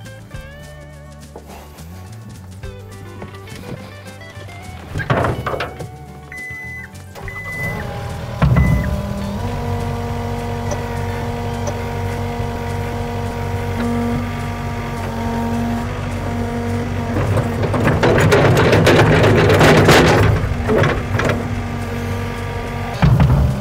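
John Deere compact track loader's engine starting about eight seconds in and then running steadily, growing louder near the end as the hydraulics tilt the bucket to knock its stuck quick-attach latches loose. Background music runs underneath.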